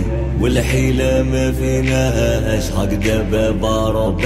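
Music from an Algerian pop-rap song: long held melodic notes over a deep bass line that shifts to a new note about halfway through.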